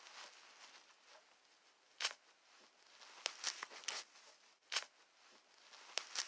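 Faint crinkling and rustling broken by a few sharp clicks: a sound effect of a disposable nappy being put on.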